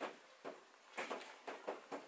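Faint handling noise: a few soft knocks and rubs as an electric-skateboard enclosure with a bolted-on heat sink is picked up and turned over.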